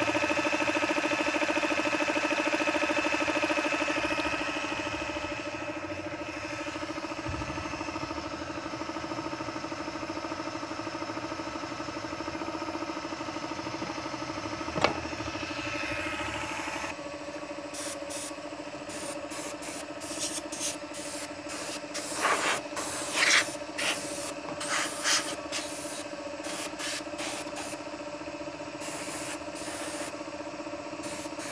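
Homemade air compressor running with a steady hum. From about halfway, short hissing bursts of air come and go, several close together near the end.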